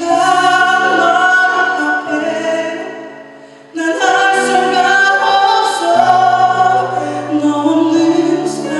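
A male ballad singer sings live into a microphone over held accompaniment chords. He sings two long phrases: the first fades out about three and a half seconds in, and the second comes in strongly just after.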